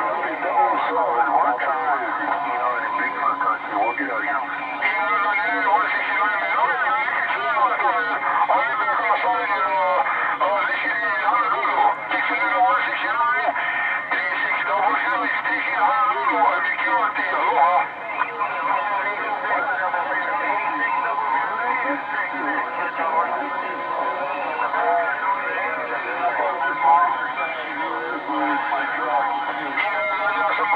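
Ranger HR2510 transceiver on 27.385 MHz (CB channel 38, the single-sideband DX channel) receiving several sideband voices talking over one another, thin and band-limited, with faint steady whistling tones underneath.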